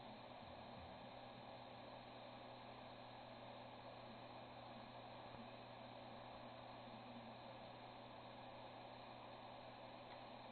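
Near silence: the faint steady hum and hiss of a hard drive spinning at idle, with no head-seek clicks.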